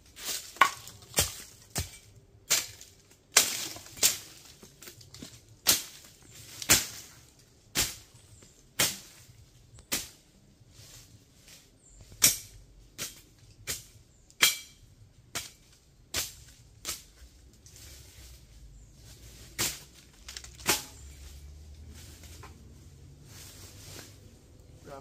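A machete chopping through brush and debris: sharp strikes at an irregular pace, roughly one a second, fewer toward the end.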